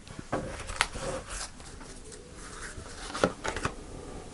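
A deck of large tarot cards being handled: cards sliding and rustling against each other as the deck is picked up and a card is drawn, with several sharp card snaps, one around a second in and a cluster near the end.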